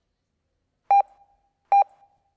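Two short electronic beeps of the same mid pitch, about a second in and again near the end, the lead-in tones from the sound system just before the routine's music starts.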